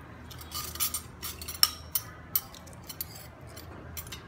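Metal spoon scraping and clinking against a ceramic plate, a run of short clinks and scrapes with the sharpest about one and a half seconds in.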